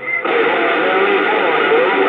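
Bearcat CB radio receiver on channel 28 (27.285 MHz) picking up a station: a short beep right at the start, then about a quarter second in a new transmission keys up with a sudden rush of static, a faint garbled voice under the noise.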